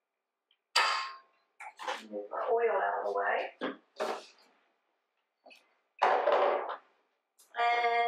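A measuring cup tapped against a stainless steel mixing bowl, one clink with a short ring about a second in. Then come a few knocks and rustles of kitchen items being picked up and set down.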